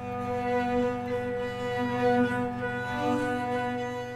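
Chamber trio of flute, violin and cello playing slow, long held notes over a steady low bass ground tone from loudspeakers; the software generates that tone from the EEG brain signals of a performer focusing on shyness, and the music is meant to express that state.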